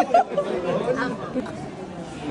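Voices of several people chattering over one another in a hallway, with short bursts of laughter at the start and again near the end.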